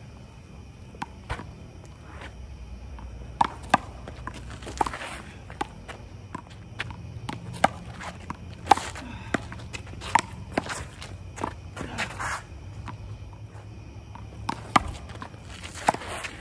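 One-wall handball rally: a dozen or so sharp slaps at irregular intervals as gloved hands strike the small rubber ball and it smacks off the concrete wall and court, with sneaker footsteps and scuffs between hits.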